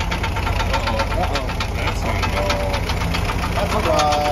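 Willys CJ3B Jeep engine running at idle with a fast, even ticking or tapping of roughly ten strokes a second over the low engine rumble.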